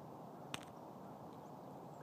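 Faint outdoor background hiss with one brief, sharp click about half a second in.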